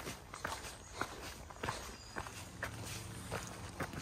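Footsteps of a hiker walking on a rocky dirt trail, roughly two steps a second.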